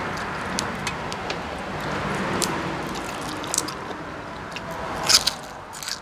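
Crisp cracks of a raw yardlong bean being broken and bitten, with crunchy chewing close to the microphone. The loudest crunch comes about five seconds in.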